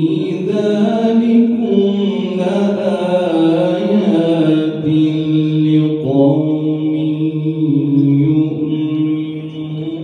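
A solo male voice recites the Quran in the melodic, ornamented tilawat style, amplified through a microphone. It holds long, drawn-out notes in two phrases, with a short break about six seconds in, and fades near the end.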